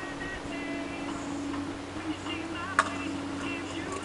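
One sharp crack about three-quarters of the way through, a plastic wiffle-ball bat hitting the ball, over a steady low hum and faint scattered chirps.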